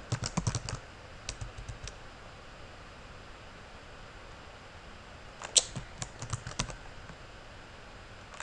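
Computer keyboard keys being typed in short bursts: a quick run of taps at the start, a few more just under two seconds in, and a louder flurry about five and a half seconds in.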